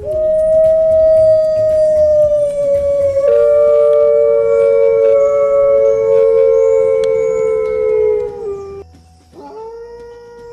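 Wolves howling: one long howl that slowly falls in pitch, joined about three seconds in by a second, lower howl. Both break off together about nine seconds in, and after a short gap a new howl starts near the end.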